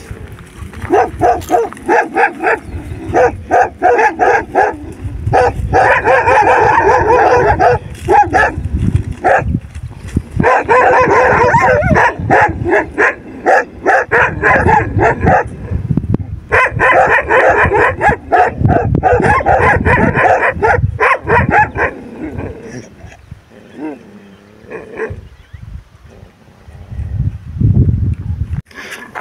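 A pack of street dogs barking at one another in a standoff: rapid, overlapping barks in long loud bouts. The barking dies down in the last few seconds to scattered fainter calls.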